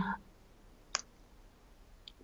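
A pause in a video call with near silence and one short, sharp click about a second in.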